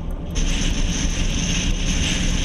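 Steady road and wind noise heard from inside a moving car, a low rumble under a hiss. About a third of a second in, the hiss jumps suddenly louder and stays even.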